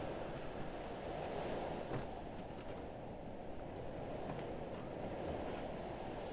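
Steady, low wind rumbling through a room, with a few faint ticks.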